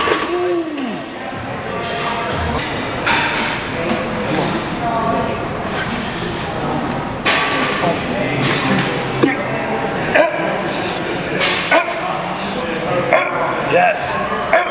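Strained grunts and short shouts from a lifter and his spotter during a heavy set to failure on a chest-press machine, with music playing in the background.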